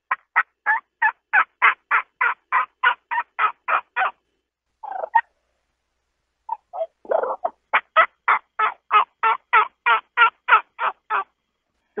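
A man imitating a hen wild turkey with his mouth alone, no call, in two long runs of evenly spaced yelping notes, about four a second, with a short lower burst between the runs. It is hen calling aimed at a gobbler that has flown down to the ground, meant to make him gobble back.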